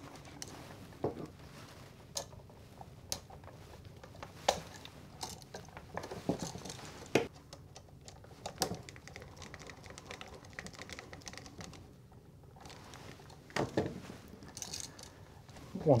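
Small clicks, taps and scrapes of hands and a screwdriver working a copper wire loop onto a duplex receptacle's terminal screw and tightening it down. The clicks come singly, about one every second or so.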